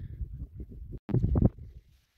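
Wind buffeting the phone's microphone outdoors, an uneven low rumble. There is a louder gust about a second in, and the sound cuts off abruptly at an edit.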